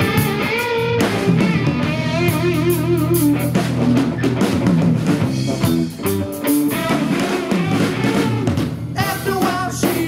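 Live rock band playing an instrumental stretch: an electric guitar lead with bent, wavering notes over electric bass and a drum kit.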